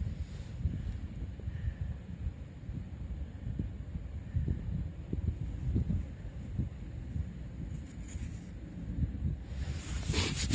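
Wind buffeting the microphone, an uneven low rumble. Just before the end, a coarse rubbing starts as a dug copper coin is wiped by hand.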